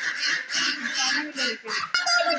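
A flock of domestic ducks and chickens calling, with voices mixed in.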